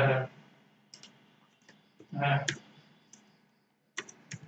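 A few sharp, isolated clicks of a computer mouse and keyboard, spaced roughly a second apart, as text is placed and typed.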